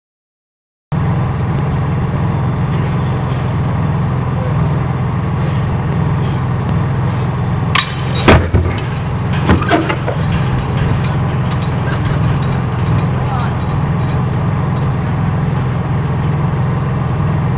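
A one-third-scale spent-fuel cask model is dropped onto the upright bar on the test pad: about eight seconds in there is one loud sharp impact, and about a second and a half later come further knocks as the cask topples onto the pad. A steady low engine hum runs underneath throughout.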